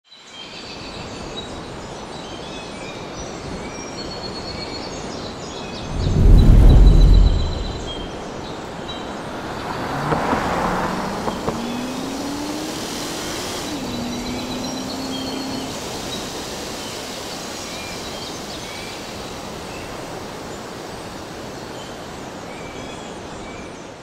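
Outdoor ambience: a steady hiss with birds chirping throughout. About six seconds in comes a loud low rumble lasting a second or so. Around ten seconds in a car engine's note rises steadily, drops suddenly as if shifting gear, then holds for a couple of seconds.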